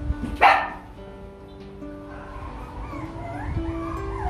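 A Rottweiler puppy gives one sharp yelp about half a second in, then whines in wavering, rising and falling cries from about two and a half seconds on. Background music plays underneath.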